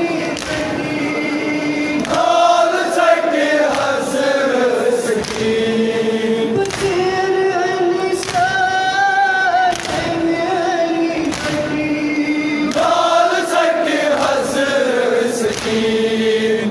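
A large group of men chanting a Kashmiri noha, the Shia mourning lament, together in long held lines, with chest-beating (matam) slaps landing roughly every second or so.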